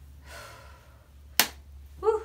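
A woman's soft, breathy exhale, then a single sharp click about a second and a half in.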